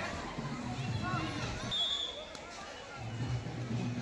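Indistinct voices of boys and watching schoolchildren calling out and chattering around an outdoor kabaddi court during a raid, with a brief high-pitched note about two seconds in.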